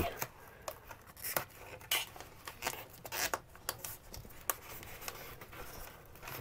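Hands pressing a strip of adhesive-backed condensation foam into place and peeling off its backing: scattered short rustles, crinkles and light taps.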